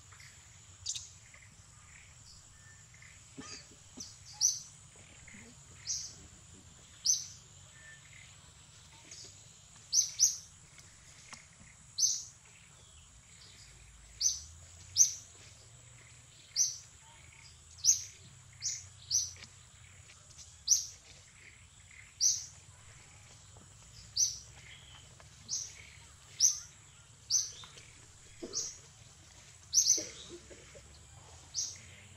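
A bird chirping repeatedly: short, high, slightly falling notes, irregularly spaced at roughly one a second, over a steady high-pitched whine.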